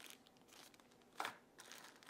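Thin plastic-like packaging bag, which the unboxer believes is made of cornstarch, crumpled in the hands: faint crinkling, with one brief louder crinkle a little over a second in.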